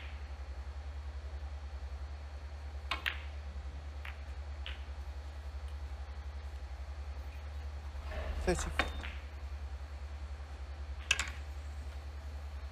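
Snooker balls clicking: the cue tip striking the cue ball about three seconds in, then sharper ball-on-ball clacks a second or so later. A brief louder burst comes past the middle and another click near the end, all over a steady low hum.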